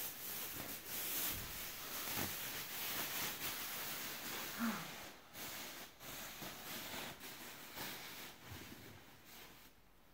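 Thin clear plastic sheeting rustling and crinkling as it is gathered up and bunched by hand, an irregular crackly rustle that dies away near the end.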